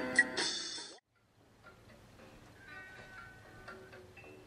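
Music that cuts off suddenly about a second in. After a brief silence, faint music with held notes starts up.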